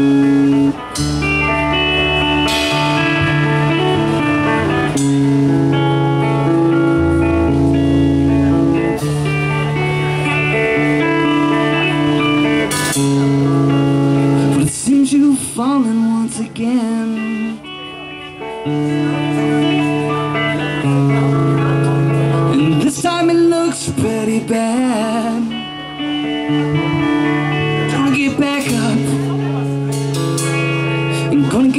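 Live rock band of two electric guitars and a drum kit playing an instrumental passage: held guitar chords changing every second or two, with cymbal crashes. About halfway through it drops quieter for a few seconds, with wavering bent guitar notes, then comes back in full.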